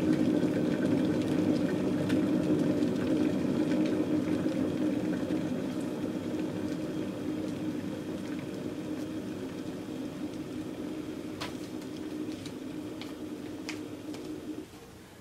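VAVA 1.7-litre stainless steel electric kettle heating water to a boil: a steady low rumble that slowly fades, with a few faint ticks near the end.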